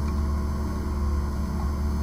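Car engine running with a steady low hum, heard from inside the cabin.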